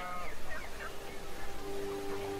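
Film soundtrack ambience: a short honk-like bird call at the start, then scattered chirps, with soft sustained music chords coming in about one and a half seconds in.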